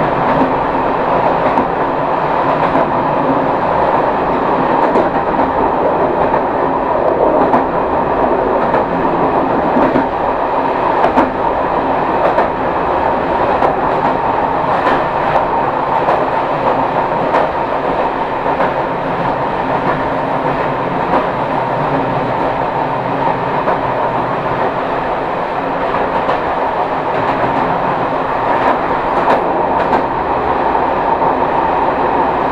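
Diesel train running along the track, heard from inside the cab: steady running and rolling noise with a steady whine, and a few clicks of the wheels over the rail joints.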